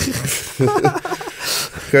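Men's voices in casual conversation: only speech.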